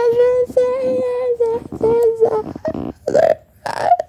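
A person's voice holding one steady high note in several short stretches, then a few short rough vocal sounds near the end.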